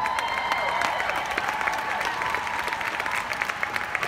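Large audience clapping, with cheering voices held over the applause; it fades as speech resumes near the end.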